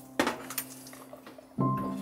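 A single light clink of kitchenware, ceramic or metal, a moment after the start, over soft background music with held notes.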